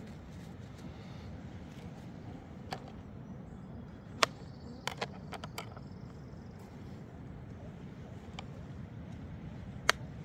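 Sharp taps and clicks of a knife against a plastic cutting board as a mushroom is cut: a quick cluster just before halfway and a single loud tap near the end, over a steady low rumble.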